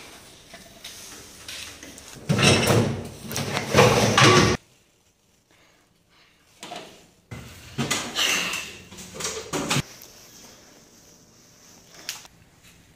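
Stored metal rods, pipes and junk being pulled about and shifted by hand, in two loud spells of scraping and clattering with a quiet gap between.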